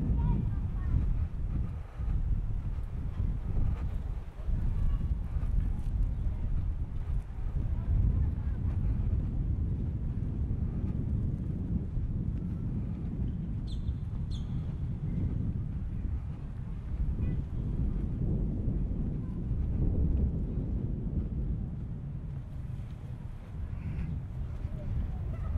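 Wind buffeting the microphone outdoors: a steady low rumble with gusts, and two short high chirps a little past halfway.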